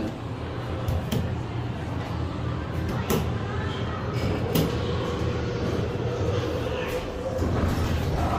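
Hydraulic elevator doors closing, with several sharp clicks and knocks from the door gear over a steady low hum in the cab. These doors keep failing to close properly and reopen.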